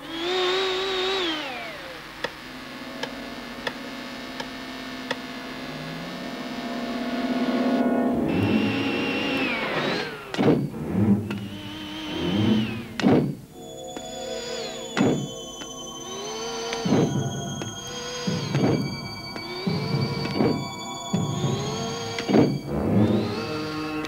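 Synthesizer film score opens with a falling electronic sweep and held tones. From about eight seconds in come repeated rising and falling mechanical whines broken by sharp thunks: robot servo movement effects.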